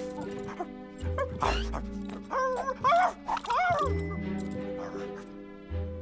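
Background music with held notes, and a cartoon French bulldog making a few short vocal sounds that rise and fall in pitch, about two to four seconds in.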